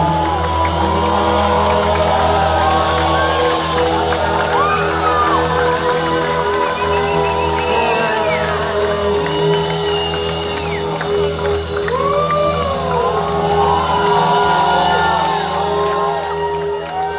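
A live rock band's chord held and ringing over bass and guitar while the club audience cheers, whoops and whistles.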